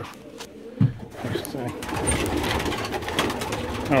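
Many domestic pigeons (New York flights) cooing together in a loft, the overlapping calls swelling after a knock just under a second in.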